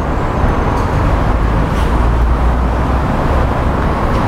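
Steady low rumble of road traffic and vehicle engines, with an even hiss above it.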